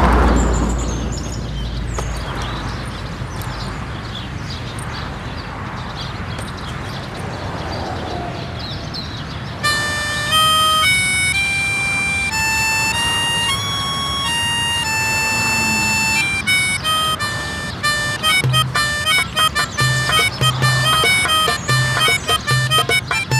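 A brief noise at the start, then outdoor background noise; about ten seconds in a harmonica starts playing a tune of single held notes, which gets quicker and choppier over a low repeating beat near the end.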